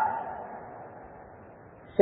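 A pause in a man's amplified speech: his last word dies away and the room's echo fades over about a second and a half into low room tone.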